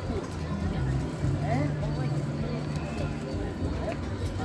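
Voices of people talking nearby, with music playing in the background under them.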